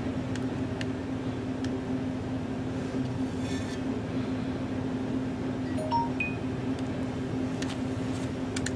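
A steady low machine hum runs throughout, with a few faint clicks. About six seconds in comes a brief cluster of high, chime-like pings.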